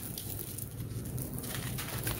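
Dry, stony red dirt crumbling between the hands, with soft gritty crunches and loose grains and dust sifting down.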